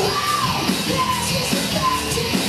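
Live rock band playing loud: electric guitar through an amp, a drum kit, and a singer's shouted vocals.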